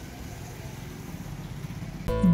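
Outdoor street background noise with a motor vehicle engine running, a steady low rumble that grows slightly louder toward the end.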